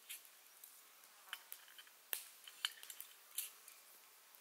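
Light metal clicks and clinks from a small folding wire camp grill grate being handled, its rods and frame knocking together. Scattered single clicks, the sharpest about two seconds in.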